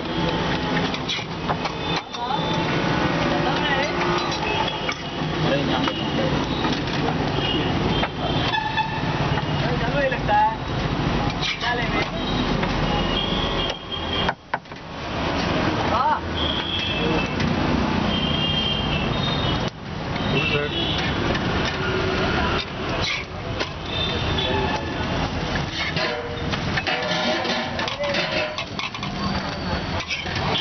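Busy street ambience: vehicle traffic with short horn toots several times, and people talking in the background.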